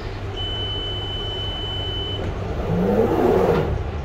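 Door-closing warning tone of a London Underground 2009 Stock Victoria line train, a steady high beep lasting about two seconds, then the train pulling away: the traction motor whine rises in pitch and the running noise grows louder from a little past halfway.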